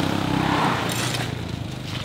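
Small motorcycle engine running steadily, then fading in the second half, with a brief scrape and a few light clinks about a second in.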